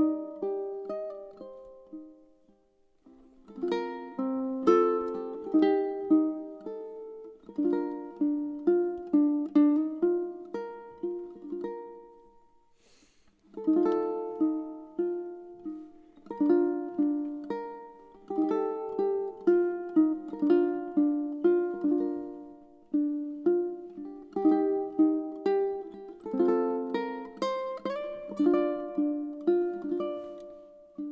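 Solo fingerstyle ukulele, a Seilen SLTS-1950R, playing a slow melody over plucked chords. The notes ring out and die away into two brief pauses, about two seconds in and again around twelve seconds in, before the playing resumes.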